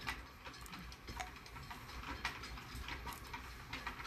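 A few faint, irregularly spaced clicks and small handling sounds over a low steady hum: objects being handled in the hands.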